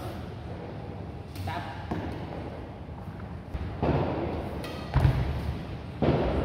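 A few sharp strikes of a badminton racket on a shuttlecock and thuds on the court. The loudest is a heavy thud about five seconds in.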